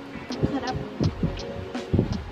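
Low gulping swallows, a few in a row, as strawberry juice is drunk from a glass.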